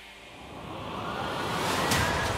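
Broadcast transition sound effect: a noise whoosh that swells and rises in pitch for about a second and a half, ending in a sharp hit near the end.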